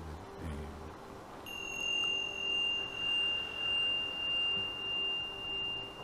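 A small metal chime or bell is struck about a second and a half in and rings on as one clear high tone, slowly dying away.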